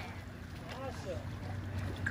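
A dog swimming in a pool, with faint water sloshing and wind on the microphone under a steady low hum; a faint voice is heard briefly about a second in.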